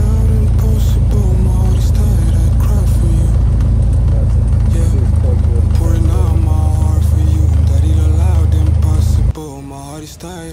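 Cessna single-engine plane's piston engine and propeller at full power during the takeoff roll, heard inside the cabin as a loud, steady drone. It cuts off abruptly about a second before the end, and music plays over it throughout.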